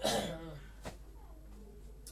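A man clearing his throat once, a short rough burst at the start, followed by a faint click just under a second in.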